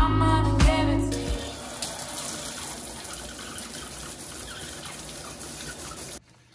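Music with a beat fades out about a second in, giving way to the steady hiss of water spraying from a shower head.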